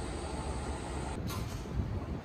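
Street traffic ambience: a steady low rumble of vehicles with a faint noise haze. It changes slightly about a second in, at a cut to another street shot.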